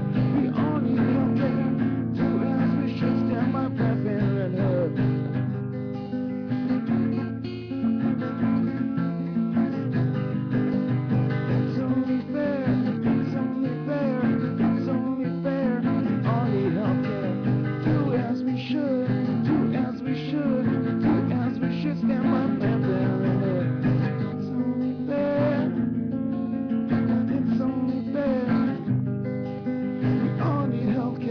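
Acoustic guitar strummed in steady chords while a man sings his song along with it.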